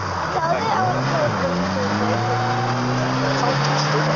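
Rally car engine running, its pitch rising slowly as the car moves off after going off the stage. Voices are heard during the first second.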